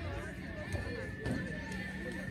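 Several voices shouting and calling over each other on an open sports field. A steady high-pitched tone comes in about halfway and holds.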